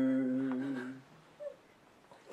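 A man's voice holding one long, steady, low hummed note that sags slightly in pitch and ends about a second in.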